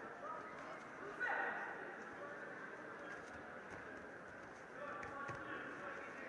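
Voices echoing in a sports hall: crowd chatter and shouting, with one louder shout about a second in.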